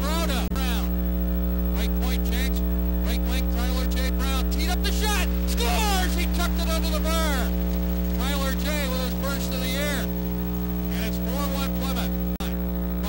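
Loud steady electrical mains hum made up of several pitches, with indistinct voices rising and falling over it.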